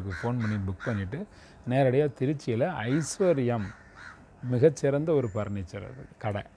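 A man's voice in short phrases whose pitch swoops up and down strongly, with two brief pauses.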